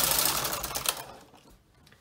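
Brother knitting machine carriage and ribber carriage pushed across the needle beds, a rushing mechanical clatter of needles knitting a row. A few sharp clicks come as the carriage reaches the end of the row, and the sound stops about a second in.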